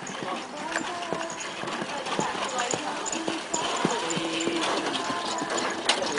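Hoofbeats of a pony trotting on arena sand in harness, pulling a two-wheeled driving carriage, under people talking.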